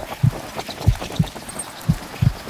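Footsteps of a person walking through long grass: dull thuds, a little under two a second.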